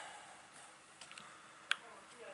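A quiet room with a couple of faint clicks about a second in and one sharp, short click near the end.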